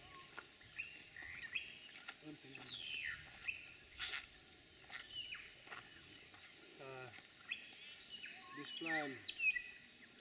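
Wild birds calling, a string of short whistles that slide down and up in pitch. Low voices murmur briefly a few times, about seven and nine seconds in.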